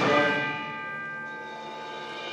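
Middle-school concert band: a loud chord dies away with its tones ringing on, and a softer held chord comes in about halfway through.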